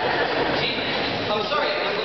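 Audience clapping, with voices mixed in.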